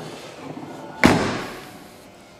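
Tailgate of a 2005 Volkswagen Touareg being shut: one slam about a second in, fading over most of a second.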